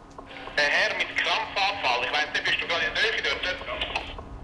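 A voice speaking over a thin, narrow-sounding call line, with a faint steady hum under it: an emergency call to the station control room reporting that a passenger on a train has had a seizure.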